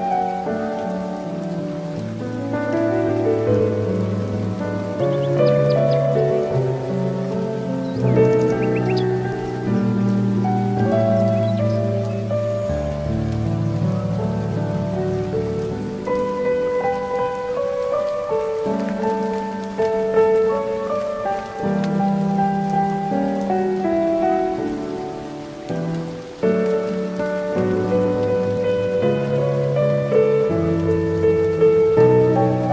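Slow, calm solo piano music, note after note, over a steady soft hiss of nature ambience, with a few faint high bird chirps around five and nine seconds in.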